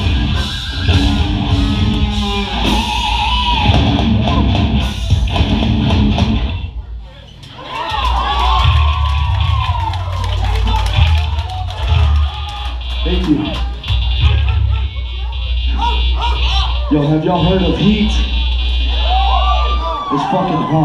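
Hardcore band playing live: distorted electric guitars, bass and drums with shouted vocals. The music breaks off briefly about seven seconds in, then comes back in with a heavier low end.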